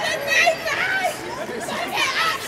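Voices talking and chattering, with no clear words.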